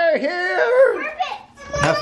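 Young children's voices: high-pitched calls and chatter, without clear words, dropping off briefly near the end.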